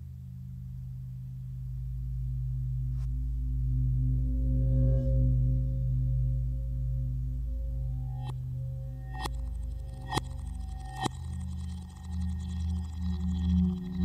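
Ambient experimental electronic music built from manipulated recordings of a metal lampshade: a steady low drone, with sharp metallic hits that ring on, one about three seconds in and four more in quick succession in the second half.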